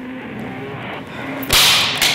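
A sudden, loud swish or crack of noise about one and a half seconds in, over a murky low background with a few faint held tones.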